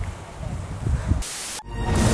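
Low rumble of wind on the microphone, then about a second in a short burst of hiss that cuts out, followed by a swelling wash of noise opening a storm-themed title sting.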